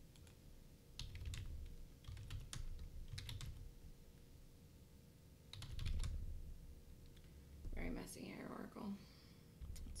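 Computer keyboard keys tapped in four short bursts of a few keystrokes each, typing ticker symbols into a trading platform.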